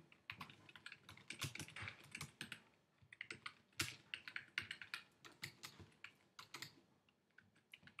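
Faint typing on a computer keyboard: a run of quick, irregular key clicks, with a brief pause about three seconds in, as a short sentence is typed out.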